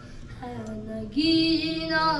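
A child's voice singing a devotional song into a microphone, starting softly and then holding a long, high, steady note from about a second in.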